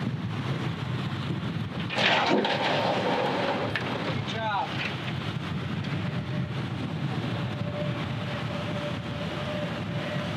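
A boat's motor running steadily at low speed with a low rumble, louder for a couple of seconds about two seconds in. A brief voice is heard near the middle.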